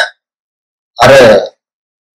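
A man's voice: the end of a spoken phrase, then dead silence, then one short spoken word or hesitation sound about a second in.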